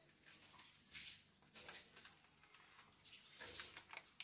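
Faint, intermittent rustling in a few short bursts: a cat's paws shifting on a cloth and a plastic bag.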